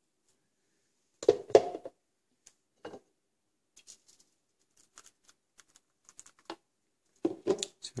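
A scattering of faint, light clicks and taps as a plastic blender cup of smoothie is handled and tipped over a mesh strainer.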